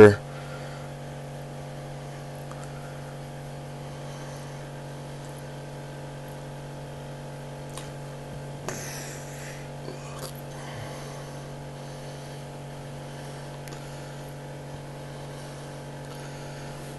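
Steady electrical hum made of several fixed tones, with faint brief rustles about nine and ten seconds in.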